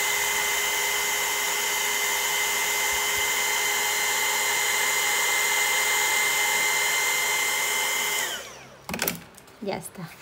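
Crelando heat gun running steadily, a blowing hiss with a high whine, melting embossing powder into a raised plastic-like layer. About eight seconds in it is switched off and winds down with a falling pitch, followed by a few light clicks of handling.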